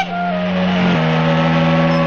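A car engine running as the car drives up and pulls in, with sustained notes of background music under it.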